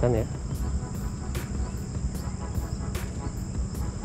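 Insects, crickets, chirping steadily in the background as a high continuous trill, over a low steady rumble.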